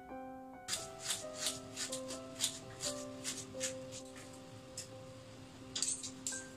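Kitchen knife slicing through a red onion and tapping the countertop, short crisp cuts at about two to three a second that thin out later, over background music with held notes.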